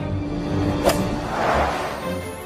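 A sharp golf club hit on a ball about a second in, followed by a swelling whoosh as the ball flies off, over background music.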